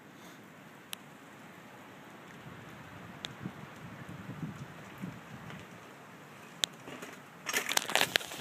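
A mountain bike rolling over a dirt trail, its noise growing louder as it approaches, with a few sharp clicks. About seven and a half seconds in comes a loud clattering crash as the bike hits the camera and knocks it into the grass.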